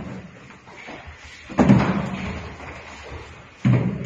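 Two loud, sudden thuds about two seconds apart, each dying away over about a second.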